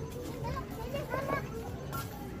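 Children's voices chattering and calling out in the background, in short high bursts.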